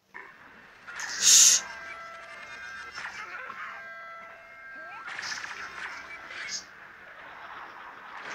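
Anime episode soundtrack: background music with held notes and a loud burst of sound effect about a second in.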